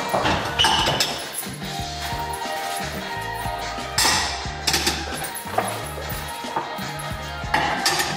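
Background music with a steady beat, over dinner plates clinking and knocking several times as they are set down and stacked on a kitchen cabinet shelf.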